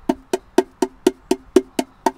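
An orange ukulele played percussively: about eight short, damped strokes in an even rhythm, roughly four a second, with the open strings barely ringing.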